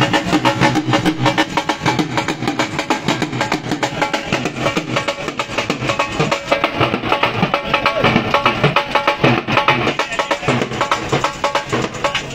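A dhol, the two-headed barrel drum, beaten with sticks in a fast, steady rhythm, with pitched music alongside.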